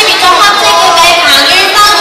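Crowd noise in a large sports hall: many voices shouting and talking over one another, loud and continuous.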